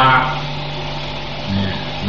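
A man's voice finishes a word, then a pause filled with a steady low hum and hiss in the recording, with a brief voiced sound about a second and a half in.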